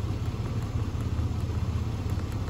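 1999 GMC Jimmy's 4.3-litre V6 idling steadily, warmed up.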